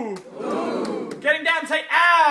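An audience calling out together in call-and-response, each drawn-out 'ooh' sliding down in pitch, with crowd murmur between the calls. One call ends just after the start and another rises about a second in and falls away near the end.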